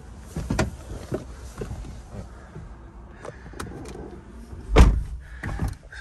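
Small knocks and rustles of someone settling into a car's driver's seat, then the Toyota GR Yaris's driver's door shutting with a heavy thump nearly five seconds in.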